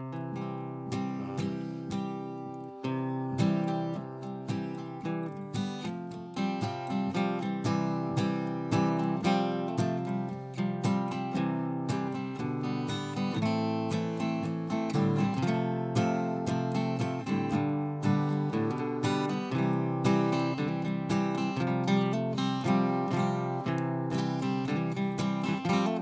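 Solo acoustic guitar strummed and picked steadily, an instrumental passage with no singing.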